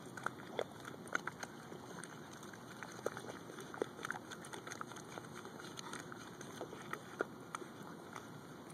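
Pembroke Welsh Corgi wallowing in a wet mud hole: scattered small wet squelches and clicks at irregular moments over a faint steady hiss.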